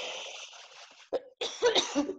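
A man coughs once: a rough, breathy burst that fades away over about a second.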